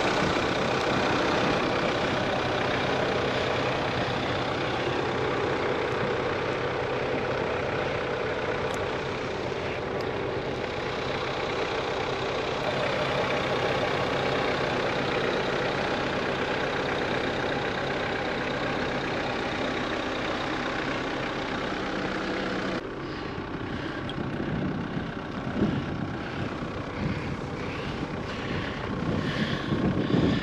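Off-road SUV engine idling steadily with a low hum, close by. About three quarters of the way through it cuts off abruptly to a quieter background with a few scattered knocks.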